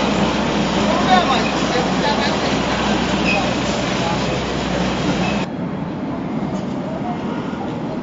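Street ambience: steady traffic noise with indistinct voices, which drops suddenly to a quieter background about five and a half seconds in.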